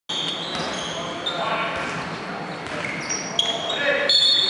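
Players' voices and short, high sneaker squeaks on the wooden court, echoing in a large indoor sports hall.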